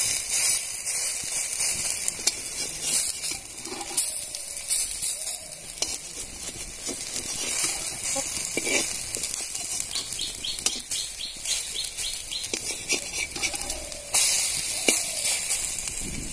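Pumpkin-flower fritters frying in shallow oil in a metal karahi, a steady sizzle, with a metal spatula now and then scraping and knocking on the pan as the fritters are turned.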